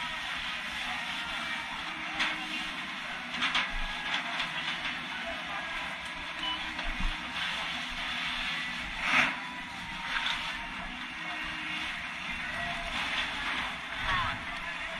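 Steady rushing hiss with a few sharp knocks and clatters, the loudest about nine seconds in.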